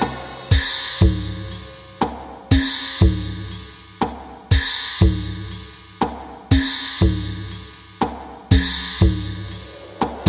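Music with a steady drum beat: sharp hits, mostly half a second apart, each ringing and dying away, over held low notes.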